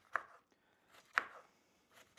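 Chef's knife chopping sweet potato into small dice on a wooden cutting board: two chops about a second apart.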